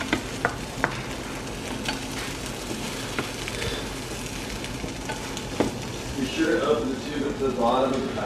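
Diced red onion frying in a nonstick pan with a steady sizzle, stirred with a plastic spatula that clicks and scrapes against the pan, several times in the first second and once more a little past halfway.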